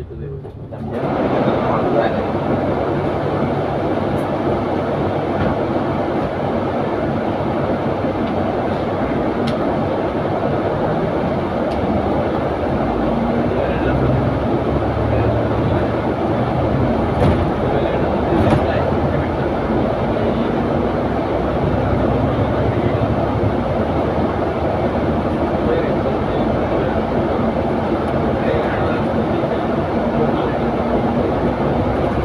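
Cabin noise on the upper deck of a moving double-decker bus: a steady rumble of engine and tyres on the road, which gets louder about a second in and then holds level, with a few faint clicks.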